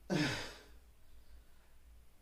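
A man's short, breathy sigh, falling in pitch, in the first half second.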